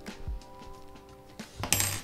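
Soft background music with steady held notes. Near the end comes a brief, bright metallic clink from the bow sight's parts being handled.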